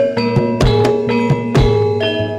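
Live Javanese gamelan music accompanying a jaranan dance: bronze metallophones struck in a steady, quick rhythm, each note ringing on over a low sustained tone.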